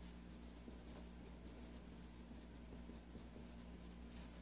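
Fine-point Sharpie marker writing on paper, faint strokes over a low steady hum.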